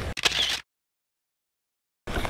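A short burst of rushing noise, about half a second, as a beachcasting rod is swung through a cast, then the sound cuts off to dead silence.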